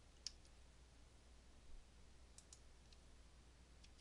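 Near silence broken by a handful of faint, widely spaced clicks from a computer keyboard and mouse, the clearest just after the start.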